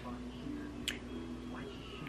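Faint television audio from a cartoon show playing in the room: music with a voice, and a single click about a second in.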